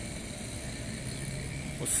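Street traffic ambience: a steady wash of road noise with a faint low hum.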